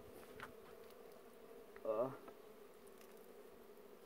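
Faint, steady buzzing hum of a wild honey bee colony stirred up at its nest in a rock cavity while it is being smoked for honey harvesting. A man's short 'oh' sounds about two seconds in.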